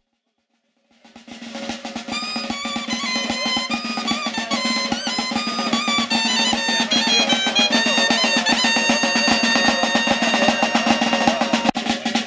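A side drum and a shrill folk reed pipe playing lively dance music: rapid, even drum strokes under a high, quick melody. It fades in about a second in and builds to a steady level.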